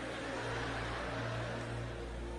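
Faint, steady background keyboard music with sustained tones over a low constant hum, with no speech.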